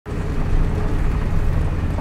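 A steady low rumble like a running engine, with a faint steady hum above it.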